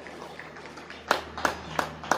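Hand clapping in a thin round of applause: a few sharp, evenly spaced claps, about three a second, starting about a second in, over a steady low hum.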